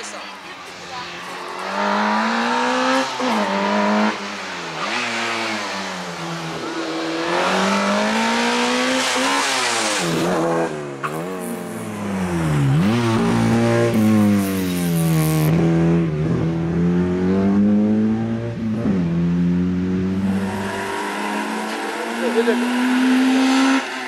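Peugeot 205 Rally's four-cylinder engine revving up and down again and again through a cone slalom, its pitch climbing and dropping with each burst of throttle. Near the end, after a cut, a second car's engine is heard, rising in pitch.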